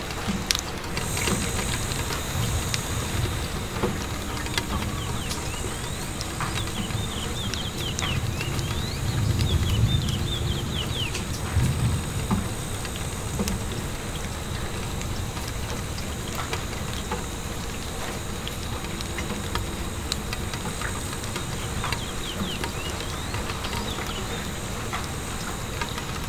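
Steady rain pattering on window glass, with many small ticks of drops striking it. A low rumble swells about a third of the way in and fades again, and a faint steady high whine runs under it.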